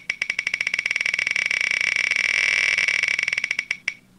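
Tick sound effect of an online spinning-wheel picker as the wheel spins: rapid clicks that run together into a buzz, then slow to single ticks as the wheel comes to a stop near the end.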